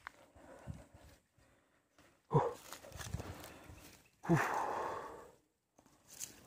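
A man's voice grunting "uh" twice, two seconds apart, each grunt trailing into a breathy exhale about a second long.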